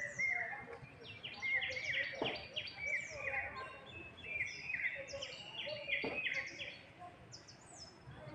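A chorus of many birds chirping and chattering together, short sweeping calls overlapping without pause, with two faint clicks about two and six seconds in.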